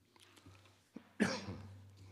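A man coughs once, a little over a second in.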